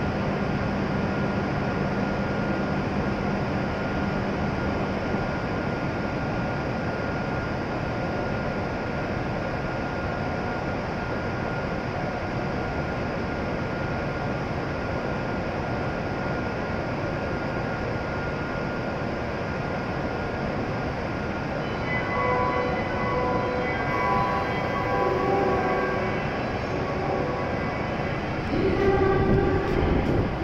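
A W7-series Shinkansen train standing at the platform, its onboard equipment running with a steady hum under the noise of the enclosed station. From about 22 seconds in, short pitched tones come and go, and a louder sound comes near the end.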